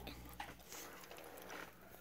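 Near quiet: faint room sound with a few soft clicks.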